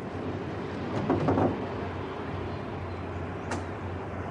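Branches of a fallen tree rustling and knocking as paddlers in a canoe pull at them to clear the way, over a steady low hum. A cluster of knocks about a second in and a single sharp click near the end.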